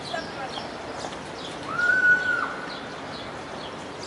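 Outdoor ambience of small birds chirping in short high notes, with children's voices in the background; about two seconds in, a single drawn-out high call rises, holds and drops away.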